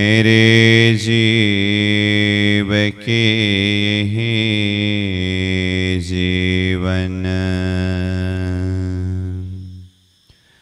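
A man's voice chanting a devotional verse in one long, slowly wavering melodic line, with short breaks about three and seven seconds in.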